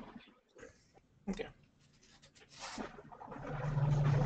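Background noise coming through remote participants' open microphones: a jumble of faint sounds that swells about three seconds in, joined near the end by a steady low hum.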